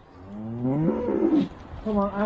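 A cow mooing: one long, low call that rises in pitch and then falls, lasting about a second. Near the end a man's voice begins.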